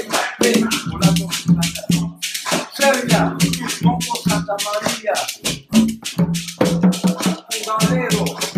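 Conga drums played by hand in a steady percussion groove, with quick sharp strokes and a rattling shaker-like sound riding on top.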